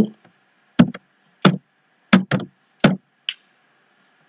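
A short word typed slowly on a computer keyboard: about six separate knocking keystrokes, then a lighter click near the end.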